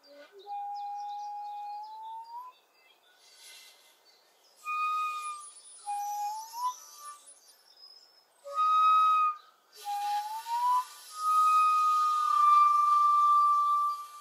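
Shakuhachi (end-blown Japanese bamboo flute) improvisation: short notes that slide upward in pitch, with breathy air noise between phrases. It ends in a long held note over the last few seconds.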